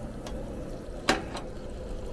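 Sliced sucuk (Turkish beef sausage) sizzling steadily in butter in a frying pan over a gas flame, with a sharp click about a second in and a fainter one just after.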